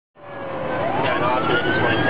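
An emergency-vehicle siren fades in over a bed of traffic noise. Its single wailing tone climbs steadily in pitch and levels off near the end.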